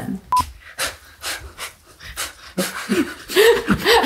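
A short single beep, then a run of quick breathy puffs about four a second, followed by a few short vocal sounds from a person.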